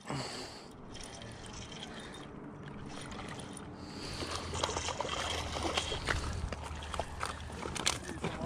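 Spinning reel being cranked to reel in a hooked fish, with water sounds at the shore's edge. Scattered clicks and rattles grow busier about halfway through as the fish is brought in.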